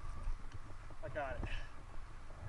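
A person's voice briefly says "got it" about a second in, over a steady low rumble and a few soft knocks.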